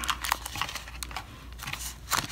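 Scattered light clicks and crinkling from plastic packaging being handled, with long acrylic nails tapping on the plastic-wrapped stamper and the box's foam insert.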